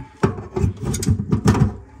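Channel-lock pliers and a sink wrench clicking and knocking against the metal nut of a kitchen sink basket strainer as they are fitted onto it: a quick run of sharp clicks.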